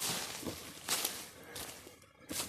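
Footsteps in dry leaf litter on a forest floor: three short rustling, crunching steps.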